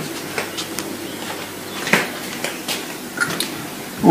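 A few light, irregular clicks and taps of handling and movement over a steady faint hiss.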